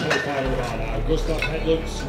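Indistinct voices with a few light metallic clinks, over a low steady hum that sets in about half a second in.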